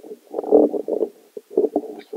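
Microphone handling noise: irregular rumbling, 'crazy cranking, weird sounds', as the microphone is fiddled with. The loudest burst comes about half a second in.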